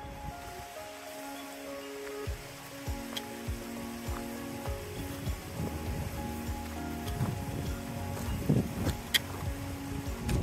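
Background music with held tones, over the outdoor sound of walking on a rocky dirt trail: steady wind hiss and irregular crunching footsteps on gravel, growing louder towards the end.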